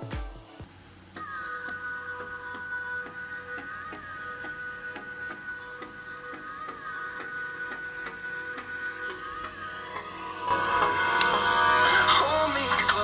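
Music playing through a smartphone's small built-in speaker, thin and without bass. About ten seconds in it turns clearly louder and fuller as the phone is stood in a plastic cup, which acts as a simple amplifier for the speaker.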